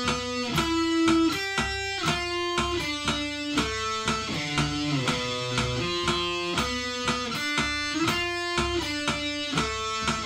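Electric guitar picking a slow single-note melody, one note at a time and changing about every half second, in time with a metronome clicking about twice a second.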